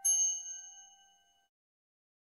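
A single bright, bell-like chime sound effect struck once, its several tones ringing and fading away over about a second and a half, followed by silence.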